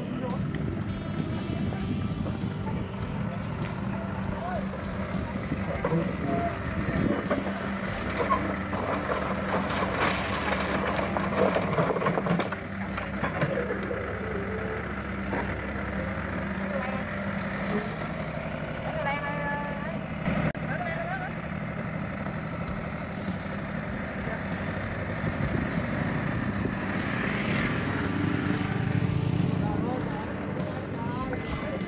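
People talking outdoors over a steady engine hum.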